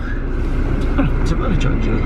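Car cabin noise while driving: a steady low engine and road rumble, with brief voice sounds over it.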